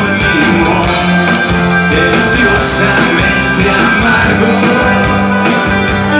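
Live rock band playing: electric guitars, bass and drums, loud and continuous.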